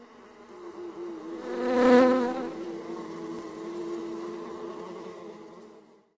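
Bees buzzing, swelling to a loud close pass about two seconds in with a wavering pitch, then fading away.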